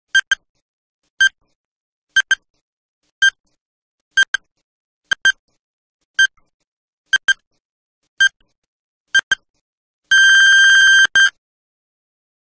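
Countdown timer beeps: a short, high electronic beep about once a second, ten times, then one long beep of about a second near the end, as the countdown runs out.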